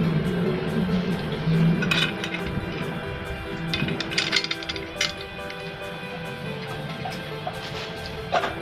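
Background music with steady sustained tones, over which a black-painted metal tail-tidy bracket clinks lightly a few times as it is handled, about two seconds in and again around four to five seconds in.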